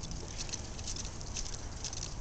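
Bicycle tyres rolling over wet asphalt: a steady low rumble with faint, scattered crackling ticks from the water on the surface.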